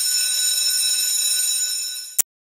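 Electric school bell ringing steadily for about two seconds, then cutting off suddenly.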